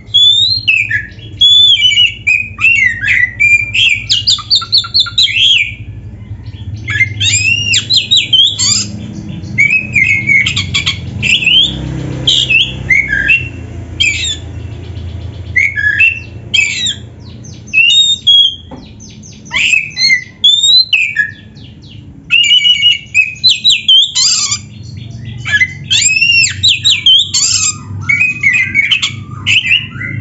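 Oriental magpie-robin (kacer) singing loud, fast, varied whistled phrases with sweeping rises and falls, packed with mimicked snippets of other birds' calls. The song breaks off briefly a few times, over a low steady background rumble.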